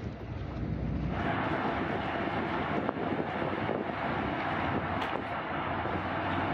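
Steady outdoor background noise, an even hiss without tones, taking over from a low rumble about a second in.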